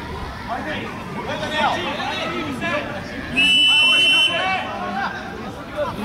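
Referee's whistle, one steady blast of just under a second about three and a half seconds in, signalling that the free kick may be taken.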